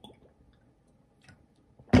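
A man drinking from a large glass bottle: a few soft glugs and swallows at the start, then a sudden louder sound just before the end.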